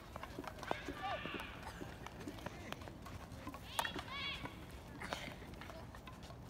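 High-pitched children's voices calling out across a field hockey pitch, in several short bursts, mixed with scattered sharp taps of hockey sticks striking the ball on artificial turf.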